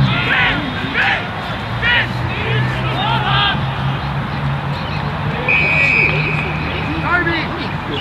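Australian rules football players shouting calls on the ground, then an umpire's whistle blowing one steady blast of about a second and a half, a little past the middle, over a steady low hum.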